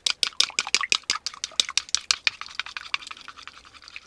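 Wooden chopsticks beating a raw egg in a bowl: quick clicks of the sticks against the bowl, about seven or eight a second, getting quieter toward the end.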